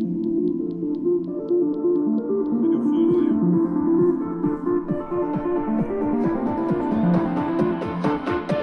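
Electronic dance music with a stepping synth melody, played through four JBL PartyBox speakers at once: two PartyBox 300s and two PartyBox 100s.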